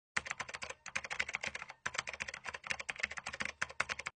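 Rapid computer-keyboard typing, used as a sound effect for on-screen text being typed out: a fast run of keystrokes starting abruptly out of silence, with two brief pauses about one and two seconds in.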